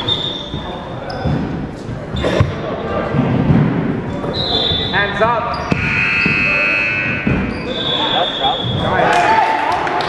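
Basketball being dribbled on a hardwood gym floor, with sneakers squeaking in several high bursts and players' voices echoing in the large hall.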